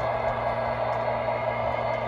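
O-scale model trains running on the layout: a steady whirring hum of motors and wheels rolling on the track, with a constant low hum underneath.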